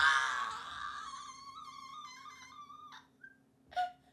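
A young woman's wordless cry: a loud shriek that turns into a long, wavering wail and fades out about three seconds in.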